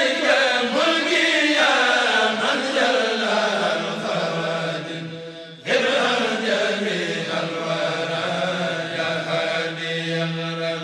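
Chanted vocal of a channel outro jingle over a low steady drone, in two phrases: the second begins suddenly about six seconds in.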